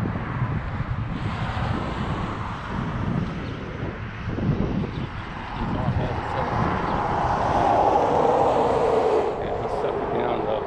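Wind buffeting the microphone, with a louder steady hum from about six seconds in that sinks slightly in pitch and stops just after nine seconds.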